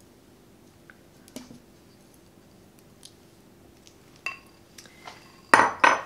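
A spatula scraping and tapping a bowl as melted white chocolate is poured into a stand mixer's steel bowl: a few light clinks over a faint hum, then a louder clatter of kitchenware near the end.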